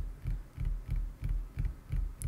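Light finger tapping on a desk, carried through the NZXT Capsule condenser microphone's integrated desk stand into the capsule as a steady run of low, dull thumps, about three to four a second. The stand passes desk vibration to the mic, and the tapping shows on the recording's waveform.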